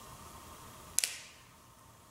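A single sharp snap about a second in: a large communion wafer being cracked as the host is broken at the fraction. The snap dies away over about half a second in the room.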